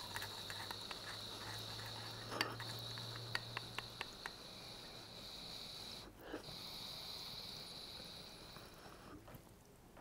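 Small glass dab rig being inhaled through without a carb cap: a faint, steady bubbling rattle of water and vapour drawn through the rig, broken once briefly about six seconds in and stopping near nine seconds. A few light clicks of the dab tool on the glass fall between about two and four seconds in.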